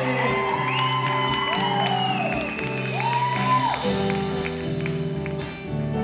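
A live band plays an instrumental passage of held chords, with a few lead notes that rise and fall in pitch over the first few seconds. Strummed guitar comes in near the end.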